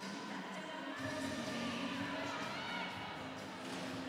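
Faint music over a hockey arena's sound system, under a low crowd murmur.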